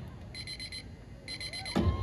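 Electronic alarm-clock beeping, two short bursts about a second apart, with a steady electronic tone sliding in near the end.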